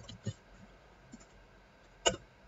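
A few faint, scattered computer keyboard keystrokes as a command is typed into a terminal, most of them near the start and one about a second in.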